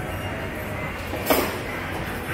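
Steady background din of an indoor shopping-mall hall, with one short, sharp noise a little past the middle.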